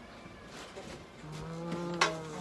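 Domestic cat giving a long, low yowl of protest while held for a blood pressure reading; it starts a little past halfway and drops in pitch as it ends.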